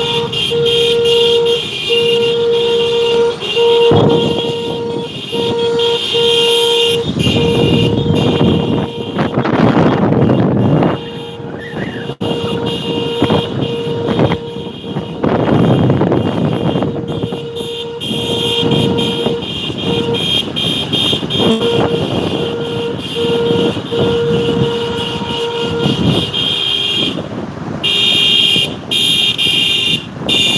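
Car horns honking: one sounds a quick series of short on-off beeps at the start and again later, over steady traffic and engine noise that swells as vehicles pass.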